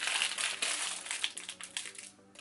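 Crinkling of a clear plastic bag of sheet-mask sachets being handled and turned over in the hands, thinning out near the end.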